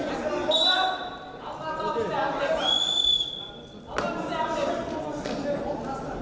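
Wrestling referee's whistle blown twice, a short blast about half a second in and a longer one near the middle, as the action is stopped. Voices carry through the hall throughout, and a sharp knock comes about four seconds in.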